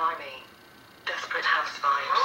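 A person speaking in a thin voice with little bass, stopping about half a second in and starting again about a second in.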